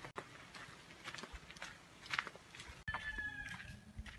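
Footsteps on a dirt trail covered in dry leaf litter, a light crunch with each step. Near the end, a single held animal call lasting about a second.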